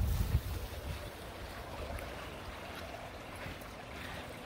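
Faint outdoor background noise on the phone microphone: a low rumble in the first second that fades, then a steady faint hiss.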